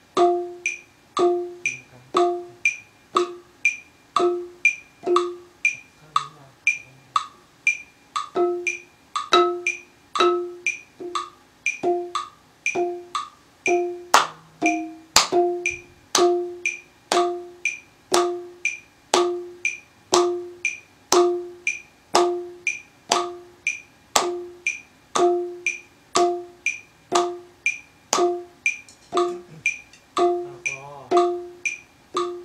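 Ranad ek, a Thai wooden xylophone, played with padded mallets in a slow, even series of single strikes, about two a second, each note ringing briefly. Mostly one low note repeats, with a few higher notes mixed in and a couple of sharper, louder strikes about halfway through.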